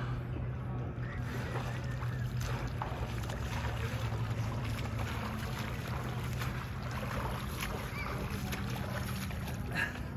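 Water splashing and sloshing from a swimmer's arm strokes in a lake, over a steady low hum.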